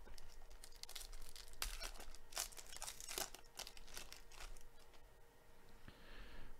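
Foil trading-card pack wrapper being torn open and crinkled by gloved hands: faint, irregular crackles and rips, quieter near the end.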